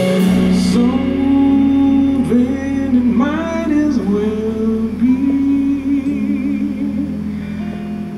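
Live performance of a slow soul-jazz ballad: a male voice sings long, sliding notes into a microphone over a band with guitar and a steady bass. Cymbal strokes fade out in the first second.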